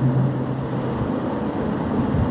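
A pause in recorded talk, filled with steady background noise and a low, steady hum that stops about a second in.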